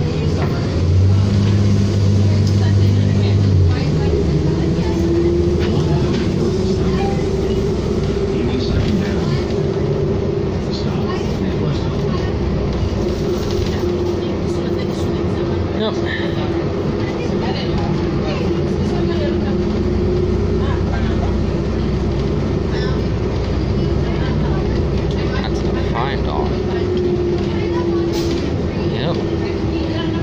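Inside a 2007 New Flyer D40LFR diesel city bus: a deep engine hum for the first few seconds, then a steady whine over a continuous drone as the bus drives along.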